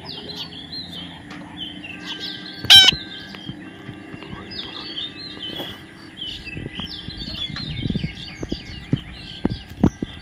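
Parakeets feeding on sunflower heads, chattering with many short high chirps, with one loud harsh squawk about three seconds in. Several sharp clicks come near the end.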